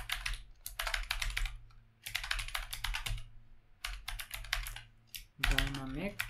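Typing on a computer keyboard: rapid keystrokes in bursts of about a second, with short pauses between them. A voice comes in near the end.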